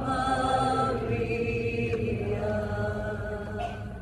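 Slow sung chant: long held vocal notes that step to a new pitch every second or so over a low steady drone, fading slightly near the end.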